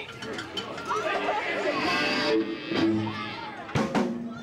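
Audience chatter between songs, with a few held electric guitar notes and a sharp click near the end.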